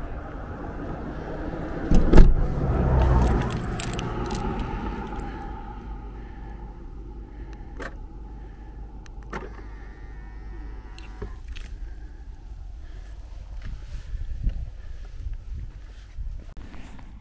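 A van's sliding side door run shut and slammed about two seconds in, then a few sharp clicks from the key fob and door locks as the van is locked remotely.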